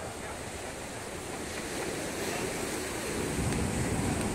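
Ocean waves washing and surging, with wind on the microphone; the surge swells louder about three seconds in.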